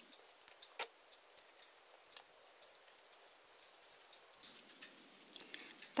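Faint clicks and light rustling of hands handling a bunch of crocheted flowers on yarn-wrapped stems, with one sharper click about a second in.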